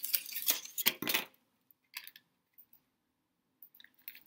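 A cluster of light clicks and knocks in about the first second, from a compact eyeshadow palette case being handled, then a few faint ticks.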